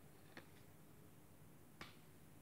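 Near silence broken by two short, faint clicks of tarot cards being handled: one early and one slightly louder near the end, as cards are drawn from the deck and laid out on the table.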